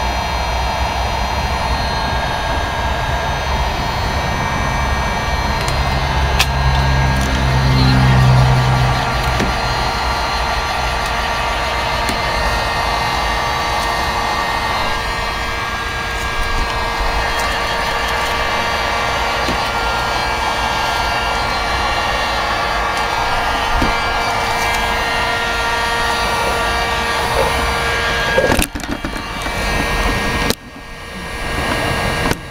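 A 1500-watt electric heat gun running steadily on high, its fan motor holding one constant tone over a blowing rush. A low rumble swells and fades over the first ten seconds or so.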